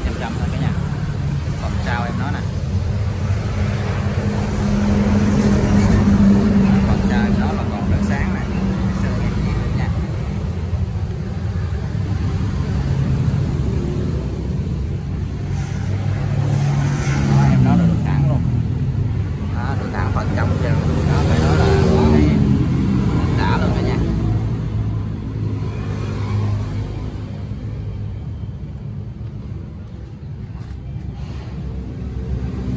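Kubota L1-33 tractor's diesel engine running, its speed rising and falling a few times, loudest around the middle and easing off near the end.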